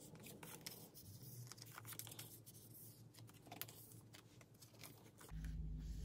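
Faint scattered clicks and plastic rustles as photocards are slid into the pockets of a clear plastic nine-pocket binder page. A low hum comes in near the end.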